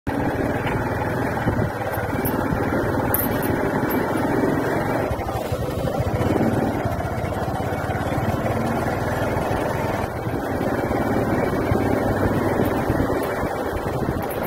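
A motorcycle running steadily as it is ridden along a street, with engine and road noise.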